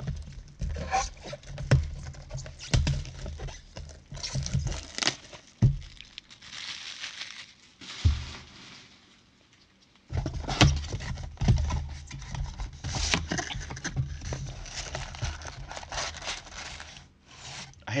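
A sealed trading-card hobby box being unwrapped and opened by gloved hands: crinkling and tearing of wrapping, with scrapes and light taps on the cardboard. The sound is a run of irregular rustles and clicks, with a brief hush about eight seconds in.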